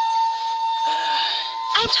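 A steady, high-pitched electronic tone, held without a break like an alarm beep. A voice begins near the end.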